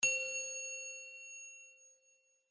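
A single bell-like chime sound effect on an animated title: one strike, then a ringing tone that fades out over about two seconds.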